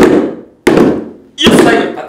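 Handmade drums with packing-tape heads struck hard with empty plastic PET bottles: three loud hits about 0.7 s apart, each ringing out briefly.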